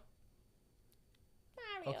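About a second and a half of near silence, then a person's voice answers 'Mario' near the end, drawn out with a falling pitch.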